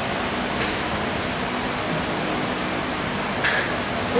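Steady background room noise, an even hum and hiss with no voice, and a short faint hiss just before the end.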